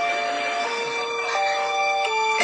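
Background music of sustained held notes, the chord changing twice.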